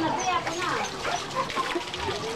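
Water poured from a plastic dipper splashing over a person and spattering onto concrete, with voices talking in the background.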